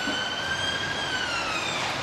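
An emergency vehicle's siren wailing: one long tone that rises slowly and then falls away toward the end.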